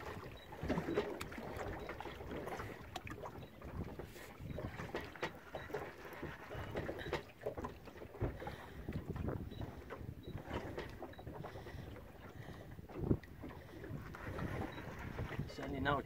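Wind on the microphone and water around a small boat at sea, with scattered faint knocks and clicks while a hooked fish is played on rod and reel.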